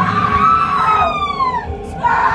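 A long, high-pitched wailing scream from a person, falling in pitch twice.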